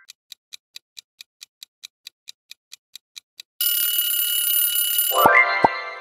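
Countdown-timer sound effect ticking evenly, about four and a half ticks a second. About three and a half seconds in, an alarm-clock bell rings loudly for about a second and a half, marking time up. It gives way to a bright rising chime with two short thumps that fades out.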